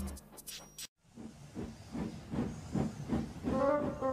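Steam locomotive puffing, about four chuffs a second, after a brief silent gap. Near the end, brass-like theme music comes in over it.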